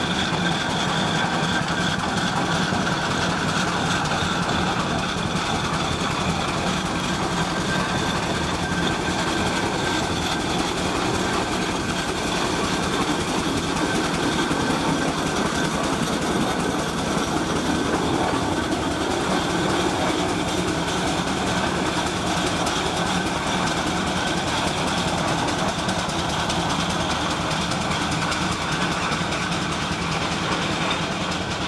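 Steam showman's engine running along a road: a steady, dense mechanical noise that holds at an even level without pauses.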